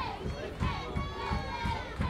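A group of high voices chanting and calling out in long, sliding calls, over a steady low beat about three times a second, the sound of a softball team cheering from the dugout.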